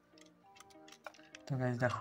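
A few light clicks from the plastic thermal printer being handled with its battery compartment open, over faint background music. A man's voice starts about one and a half seconds in.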